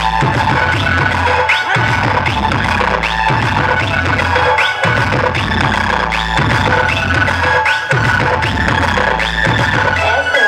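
Dance mix played loud through a truck-mounted stack of DJ speaker cabinets, dominated by a heavy bass line that pulses about every second and a half, with short rising squeals repeating over it.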